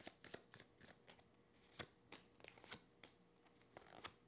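A tarot deck being shuffled and handled, with cards drawn from it: faint, irregular soft clicks and taps of cards sliding against each other.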